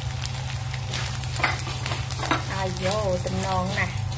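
Flattened rice and fried sausage bits being stirred and dry-fried in a hot wok with a spatula, which scrapes and clicks against the metal.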